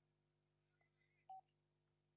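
Near silence: a faint steady electrical hum, broken by one short beep a little over a second in.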